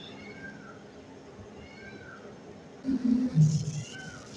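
Quiet room tone, then about three seconds in a man's brief low murmur under his breath.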